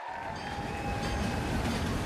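Opening sound design of a stage show's soundtrack: a deep rumble starts abruptly, under a thin held tone that fades out about one and a half seconds in.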